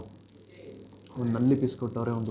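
A man's voice, after about a second of quiet room tone, starts about a second in and carries on to the end.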